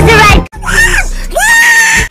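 A very loud, boosted voice screaming: a short blast that cuts off about half a second in, then a second cry that rises and ends on a long held high note.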